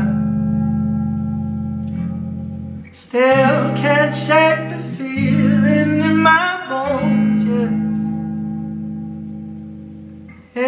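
A man singing live to his own electric guitar, a Stratocaster-style instrument playing slow, ringing chords. The first chord rings out alone for about three seconds before the voice comes in; his voice is croaky, by his own account.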